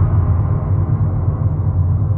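A loud, deep, steady rumble from a dark cinematic sound effect, with its higher sounds slowly fading.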